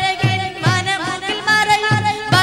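A group of singers performing a song with wavering, heavily ornamented melody lines over a steady low beat of about three strokes a second.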